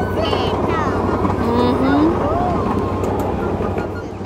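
Ride-on miniature train running along its track: a steady, dense running noise with a low hum underneath, and wind buffeting the microphone. Faint voices come and go over it.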